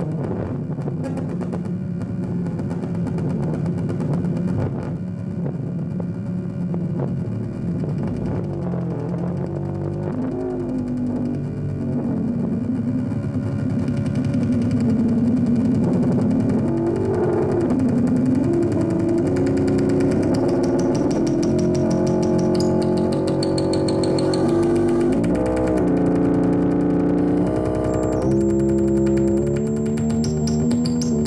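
Modular synthesizer drone layered with amplifier feedback: a dense stack of sustained electronic tones whose pitches step and glide, growing somewhat louder about halfway through, with a thin high tone entering near the end.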